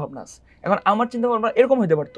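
A man speaking in conversation, with a brief pause partway through.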